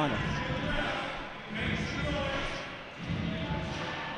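Arena crowd cheering and chanting after a deciding hit, the noise swelling about one and a half seconds in and easing off near the end.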